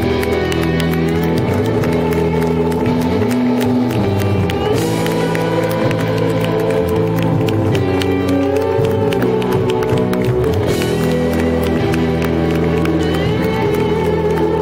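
A live band plays an instrumental ending of sustained notes that slide from pitch to pitch, with the audience cheering and clapping over it.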